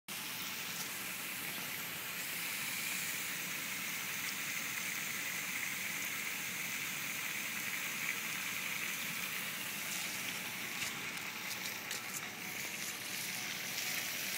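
Pressurised water spraying from a vertical split in a Kennedy fire hydrant's cast barrel, a steady hiss. The split is most likely a freeze crack, from water that froze inside the shut-off hydrant.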